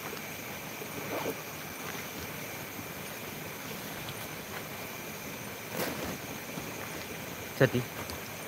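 Steady night-time outdoor ambience: a constant faint insect drone over an even background hiss, with a few faint distant voices and one short spoken word near the end.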